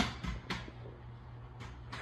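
Quiet room tone with a faint steady low hum and a couple of short faint clicks, one at the start and one about half a second in.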